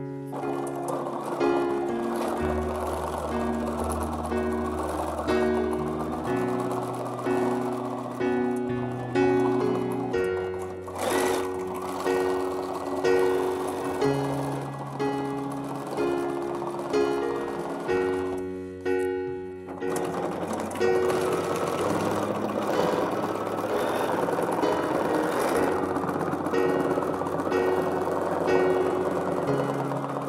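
Background music with a slow, stepping bass line, over a Bernina B740 sewing machine running at speed as fabric is free-motion stitched with the feed dogs down. The machine stops briefly a little after halfway, then starts again.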